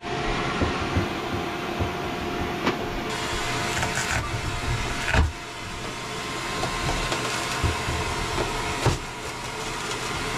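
A steady whirring background noise with a few faint tones. Over it, a small flathead screwdriver clicks and scrapes as it pries at a boat's ceiling liner, with a louder knock about five seconds in.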